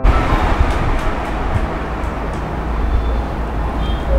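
Loud, steady rumbling noise with a hiss over it and a few faint ticks.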